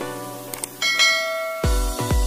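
Intro music: a run of plucked-sounding notes, then a bright bell-like chime about a second in, and near the end an electronic beat with heavy bass kicks begins.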